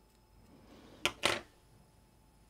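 Small metal reel parts being handled on a work mat: two quick, sharp clicks a little after one second in.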